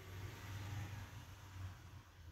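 Faint scraping hiss of a metal painting knife spreading thick acrylic paint on paper, fading out near the end, over a low steady hum.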